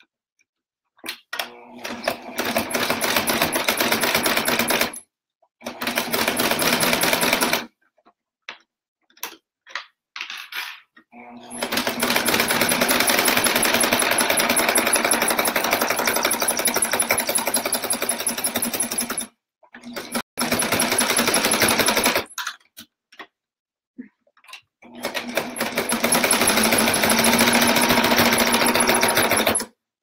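Electric domestic sewing machine stitching through quilted fabric in five runs, the longest about seven seconds, with short silent stops between them as the work is repositioned.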